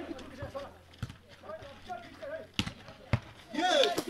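A volleyball being hit by hands during play: four sharp smacks spread over a few seconds, with players' faint calls and voices that grow louder near the end.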